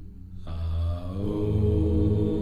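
Low chanted vocal drone, a mantra-like sustained chant, entering about half a second in over a steady ambient music bed.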